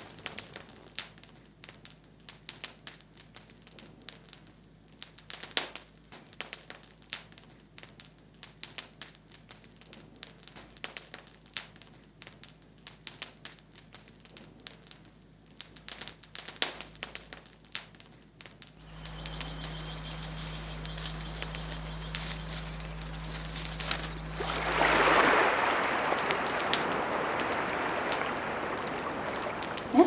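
Small open fire of dry twigs and branches crackling, with sharp, irregular snaps and pops. After about two-thirds of the time the crackling gives way to a steady low hum and rushing noise, which swells louder briefly a few seconds before the end.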